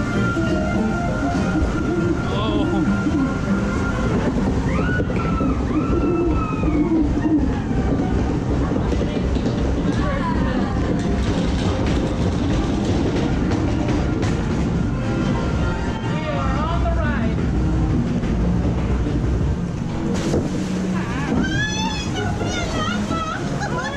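Log flume ride's chain lift rumbling and rattling steadily as the boat is hauled up the incline. Ride soundtrack music and voices play over it at several points.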